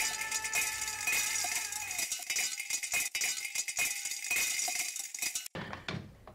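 Metal coins clinking and rattling as they drop and stack, in many quick overlapping clinks that stop abruptly about five and a half seconds in.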